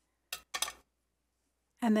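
A few short plastic clicks in the first second as the clear cap is pushed onto a watercolor brush marker and the pen is handled.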